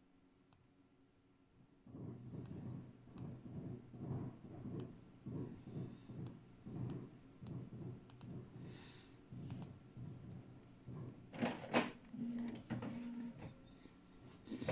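About ten sharp single clicks of a laptop's pointing device, spaced irregularly. Under them, from about two seconds in, runs a low, uneven rumble that grows louder for a moment near the end.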